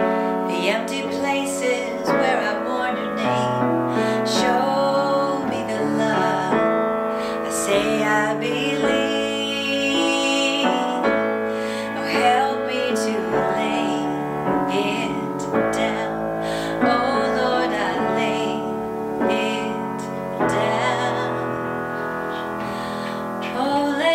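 A woman singing a song with grand piano accompaniment.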